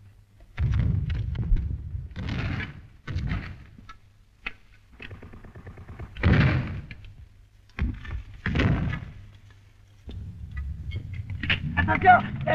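Battle noise on an old film soundtrack: irregular rifle shots and shell bursts. Several loud bangs die away over about half a second each, with sharp cracks between them and a low rumble underneath that swells near the end.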